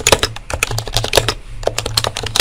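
Computer keyboard typing: a quick, irregular run of key clicks, many a second, starting abruptly.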